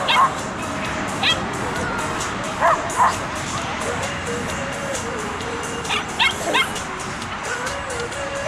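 A dog barking in short sharp barks, about seven in all, in clusters: one near the start, a pair around three seconds in and a quick run of three near six seconds.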